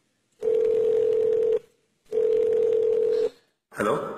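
Telephone ringback tone through the handset: two long, steady ring beeps of a little over a second each, with a short pause between, as the dialled call rings at the other end. A voice answers near the end.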